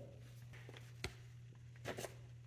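Quiet room tone with a steady low hum, broken by two short, faint clicks about a second apart as gloved hands handle items on the workbench.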